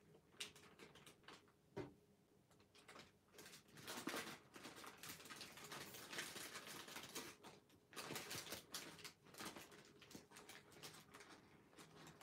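Faint rustling and crinkling of a large sheet of thin origami paper being folded and collapsed by hand along its pre-creases, a run of small irregular crackles that grows busier about four seconds in and again near eight seconds.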